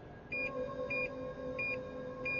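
Electronic sci-fi sound effect of a giant robot starting to operate. A steady hum comes in about a third of a second in, with a short high beep repeating roughly every two-thirds of a second.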